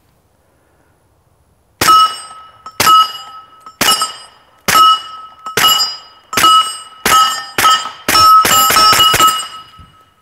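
Suppressed .45 ACP pistol, an S&W M&P 45 with an AAC Tirant 45 can, firing about a dozen subsonic 230-grain rounds at steel targets, each muffled shot followed by the ring of steel. It starts about two seconds in at roughly one shot a second and speeds up to a quick string near the end.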